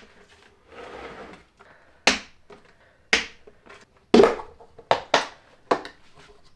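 Tight plastic lid of a joint-compound bucket being pried off by hand, with a series of sharp plastic snaps as its rim catches give way one after another. The last snap comes near the end as the lid comes free.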